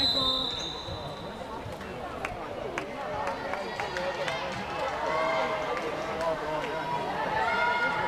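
A referee's whistle blows one short, shrill blast at the start, stopping play in a volleyball match. Players' voices call and chatter afterwards, with a few knocks of the ball.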